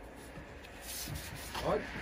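Soft rubbing scrape as a bricklayer's upright corner profile is handled and adjusted on the scaffold, with a short word near the end.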